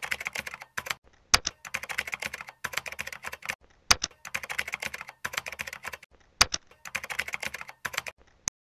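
Computer keyboard typing: rapid runs of keystrokes broken by short pauses. A single sharper click sounds about every two and a half seconds.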